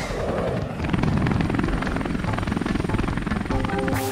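A rapid fluttering sound effect, a quick chopping run of pulses like a helicopter or a riffled deck of cards, with music notes coming back in just before the end.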